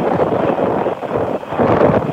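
Strong wind buffeting a phone's microphone on the deck of a boat under way, in uneven gusts that swell louder near the end.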